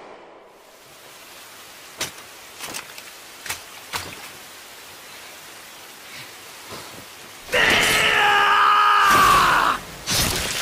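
Steady rain hiss with a few sharp knocks about two to four seconds in. From about seven and a half seconds a loud, drawn-out, wavering scream from a man rises over the rain, lasting about two seconds and cutting off just before the end.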